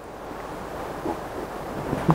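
Gale-force wind gusting, an even rushing noise that builds gradually.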